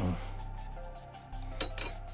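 Light handling clinks of small metal parts on a workbench, with two short clicks near the end, over a steady low hum.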